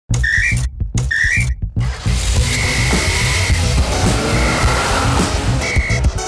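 Whistle sound effects in a show's intro music: two short whistle toots rising in pitch, then a music track with a pulsing bass beat over which a whistle blows three long steady blasts.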